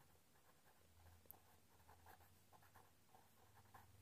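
Near silence, with faint scratching of a pen writing on paper.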